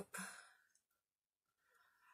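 Near silence in a pause between words: a woman's breath trails off just after the last word, and a faint breath comes in near the end.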